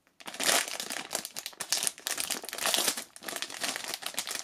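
Foil blind bag of a Titans vinyl figure crinkling as it is crumpled and worked open by hand: a dense, irregular crackle that starts a moment in and keeps going.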